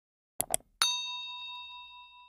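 Two quick clicks, then a bright notification-bell ding with several ringing tones that fade out over about two seconds: the sound effect of the subscribe animation's bell icon being clicked.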